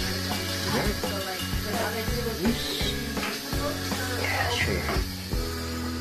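Background music with singing over a steady high hiss from an Instant Pot's pressure release valve venting steam as the pressure is let out.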